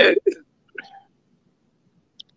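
A man's word trailing off, then two brief faint throat noises within the first second, then quiet.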